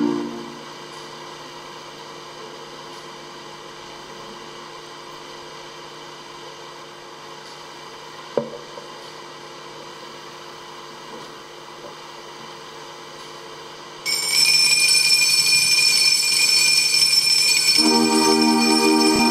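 A faint steady hum with a single sharp knock about eight seconds in. About fourteen seconds in, a set of altar bells starts ringing loudly and keeps ringing. This is the bell ringing at Benediction as the priest raises the monstrance with the Blessed Sacrament.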